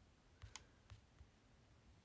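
Near silence with a few faint, short clicks, about four of them in the first second and a half.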